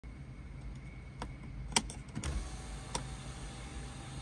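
Switch clicks, the loudest just under two seconds in with a few quick ones after it and another near three seconds. Then the power sunroof's electric motor runs with a faint steady whine as the sunshade slides back.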